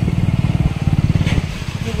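Motorbike engine running steadily at low speed, heard from the rider's seat as a fast, even low thrum.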